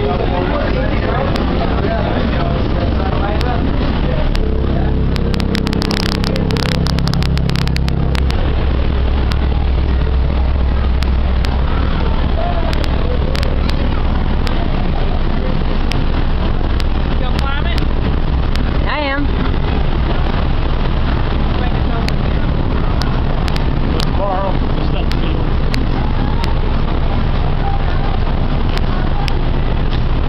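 Wind buffeting the microphone on an open ship's deck: a loud, steady low rumble, heaviest several seconds in, with people's voices in the background.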